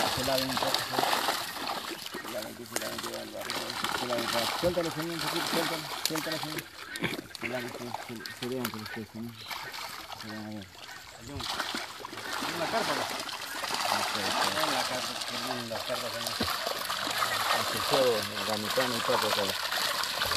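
Water splashing and sloshing as a weighted fish net is hauled up a pond's sloping bank, with fish thrashing in the shallows of the net near the end. Voices talk throughout.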